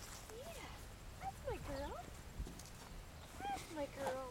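Young Labrador Retriever puppies whining and squeaking: short calls that rise and fall in pitch, in three bouts, near the start, in the middle and near the end.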